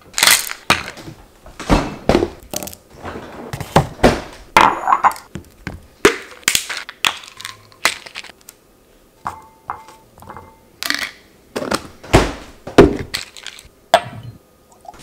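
Kitchen clatter from making breakfast: an irregular series of sharp knocks and clicks as a bowl, a glass tumbler, a cereal box and a tablet bottle are handled and set down on a stone countertop, one clink ringing briefly about five seconds in.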